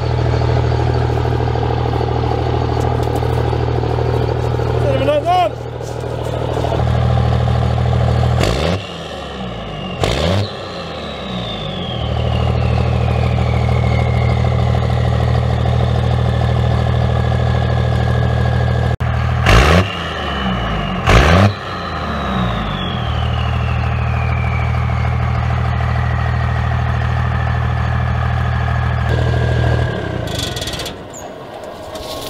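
2001 Dodge Ram's 5.9-litre 24-valve Cummins turbo-diesel straight-six idling through a straight pipe with the muffler removed. About eight seconds in, and again around twenty seconds, it is revved twice in quick succession. After each pair of revs a high turbo whistle falls slowly in pitch as the turbo spools down.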